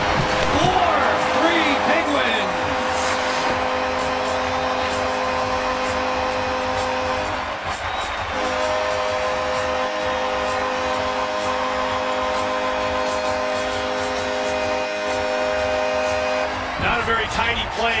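Hockey arena crowd cheering a goal, with a long steady chord of held tones over the noise that shifts in pitch about eight seconds in. A voice shouts at the start.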